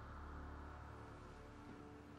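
Faint background music: a soft, sustained tone held steady under near-quiet room tone.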